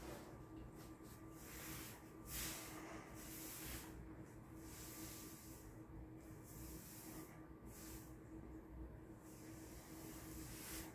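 Faint, repeated soft swishes of a paintbrush's bristles drawn along a drywall wall while cutting in paint at the ceiling line, roughly one stroke a second, over a faint steady hum.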